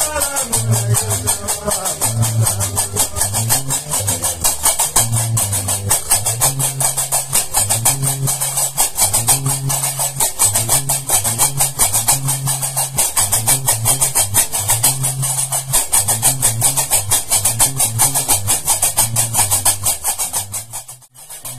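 Gnawa music: a guembri bass lute plays a repeating low riff while qraqeb iron castanets clatter a fast, steady rhythm.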